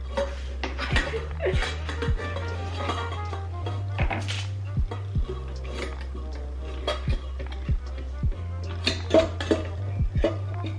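Background music with a steady beat, over a plastic spatula scraping and clinking against a stand mixer's metal bowl.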